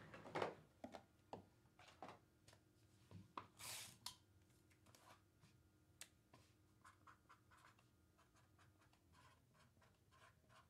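Quiet handling of trading cards: light clicks and rubs as cards slide and are flipped, with a brief swish a little under four seconds in and a run of small ticks in the second half.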